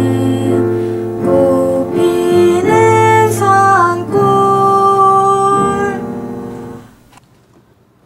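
A girl singing a song to electric keyboard accompaniment; the music breaks off about seven seconds in.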